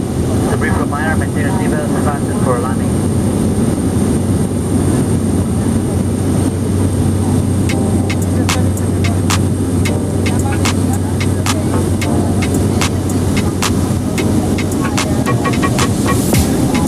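Cabin noise of a small high-wing propeller plane in cruise: a loud, steady drone of engine and propeller with a constant low hum. In the second half, scattered sharp clicks are heard.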